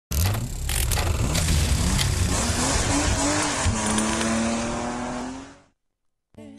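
Car sound effects for the opening sting: a racing engine revving and tyres squealing. The engine note climbs in pitch in the second half, then the sound fades out shortly before the end.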